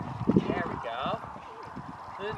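Horse's hooves on sand arena footing as it lands from a jump and canters on, with a heavier thud of the landing near the start and softer hoofbeats after it. A faint voice is heard in the background.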